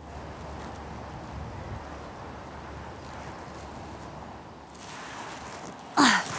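Steady outdoor background noise: an even hiss with a low rumble underneath, easing slightly about four seconds in.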